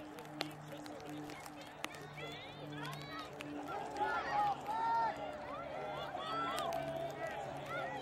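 Several voices shouting and calling out at once across a rugby pitch, getting louder about halfway through as a ruck forms. Two sharp clicks come in the first two seconds.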